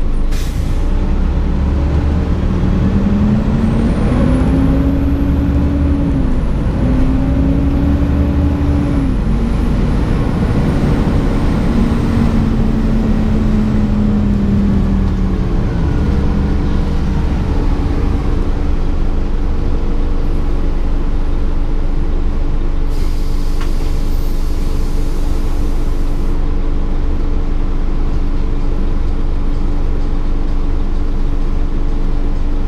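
Interior of a 2004 Gillig Advantage transit bus on the move: a steady engine and drivetrain drone, with a whine that climbs in pitch as the bus gathers speed, steps once at a gear change, then falls as it slows. About three seconds of air hiss comes past the middle.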